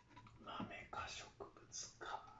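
Faint mouth sounds close to the microphone, coming in short, irregular hissy bursts.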